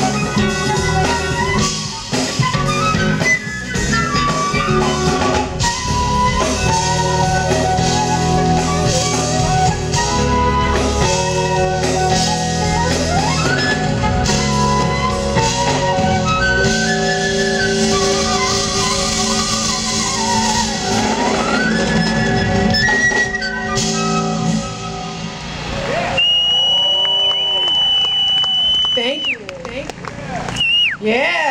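Live smooth jazz band with a flute lead: flute melody with gliding runs over keyboards, bass and drum kit. Near the end the low instruments drop out and a long high note is held as the tune closes.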